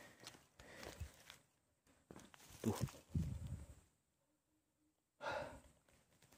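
A man's breathy sighs and exhales, with scuffing on dry grass, in a few uneven bursts and a second-long silence just before the last one.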